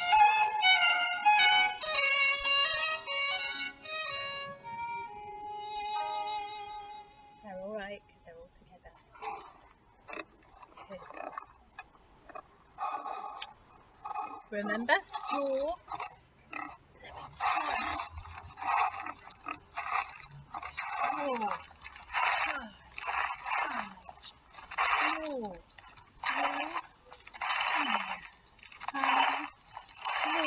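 Instrumental music fades out over the first several seconds. After a quiet stretch, from about halfway on a woman's voice chants the action words "straw, straw, tie, tie" in a steady rhythm, roughly one word a second.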